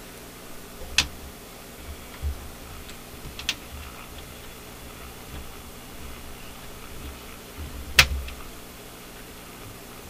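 A steady low electrical hum from the bench setup, with a few sharp clicks from the test-equipment controls as the signal generator's output is turned down. The loudest click comes about eight seconds in.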